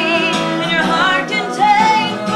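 Live acoustic performance: a woman singing held notes with vibrato over a strummed acoustic guitar.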